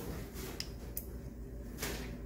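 Electric pottery wheel running with a steady low hum while wet hands work the clay wall of a pot on it, giving a few brief swishes; the clearest comes near the end.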